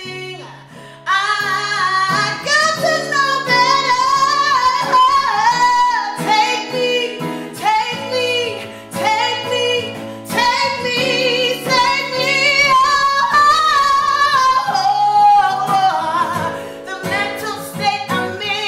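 A woman singing with full voice over a strummed acoustic guitar. The voice comes in strongly about a second in.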